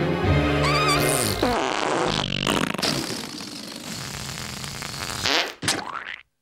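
Cartoon sound effects over the orchestral score: a wobbling whistle, then a long rush of air escaping from a cockroach blown up like a balloon. The music drops away as the rush goes on, and a quick sweep comes near the end.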